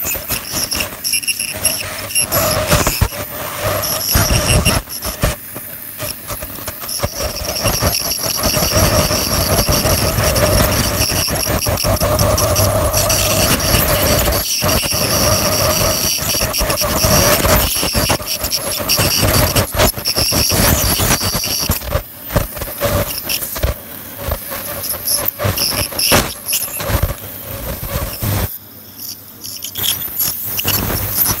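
Ultrasonic dental scaler working on a dog's teeth: a steady high-pitched whine with the hiss of its water spray and irregular clicking and scraping of the tip on tartar. The whine drops out about two-thirds of the way through, leaving the clicking and scraping.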